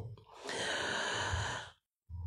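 A man's long breath into a close microphone, lasting about a second and a half, then the sound cuts off abruptly.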